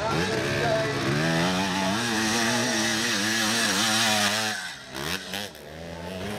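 Off-road motocross bike engine revving hard under load, its pitch rising and wavering as the rider works the throttle, then falling away about four and a half seconds in before picking up again near the end.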